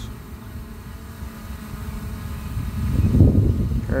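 Wind buffeting an outdoor microphone: an uneven low rumble that swells about three seconds in, with a faint steady hum under it.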